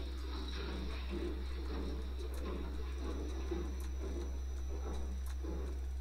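A steady low hum with a faint, steady high whine above it and faint, indistinct muffled sounds.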